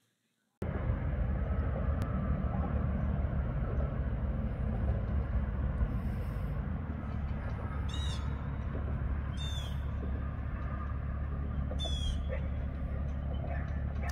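Steady low rumble of outdoor waterside ambience, with a bird giving three short, falling calls in the second half.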